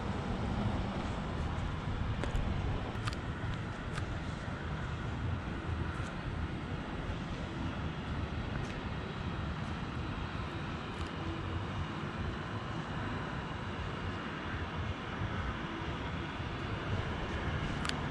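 Outdoor city background noise: a steady low rumble with a few faint ticks now and then.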